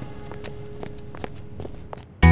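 Footsteps on a hard floor, a sharp step about every half second, over the faint tail of fading background music.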